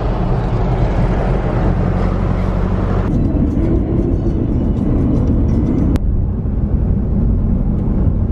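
Car moving on the road, heard from inside: steady engine and tyre noise with a low drone. The noise changes character abruptly about three seconds in and again about six seconds in, as separate driving clips are cut together.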